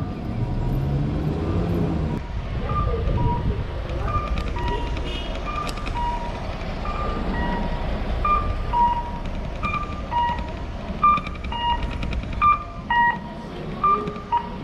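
Pedestrian crossing signal sounding its electronic cuckoo-style chime, a higher note then a lower one repeated over and over, growing louder and quicker near the end. Street traffic noise runs underneath.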